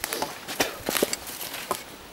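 Footsteps pushing through dense undergrowth on muddy ground, with irregular crackles and snaps of twigs and leaves underfoot.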